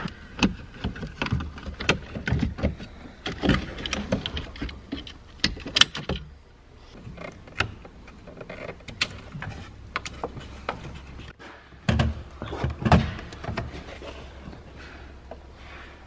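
Irregular clicks, knocks and rattles of plastic dashboard trim and wiring connectors being handled and unplugged while a Toyota MR2's instrument cluster is worked loose with hand tools. Two louder knocks come about twelve seconds in.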